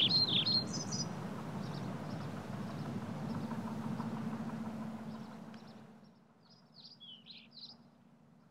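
Birds chirping over outdoor background noise with a steady low hum; the background fades out about five to six seconds in, and a few more chirps follow near the end.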